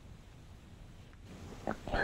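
Quiet room tone, then near the end a woman's short sniff and a soft whimpering sob.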